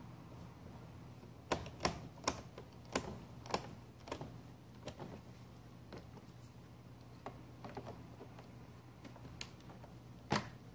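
Irregular sharp plastic clicks and taps from handling and fitting the Roomba's side brush parts with fingers and a small screwdriver. A quick run of about eight louder clicks comes in the first half, then a few fainter ones.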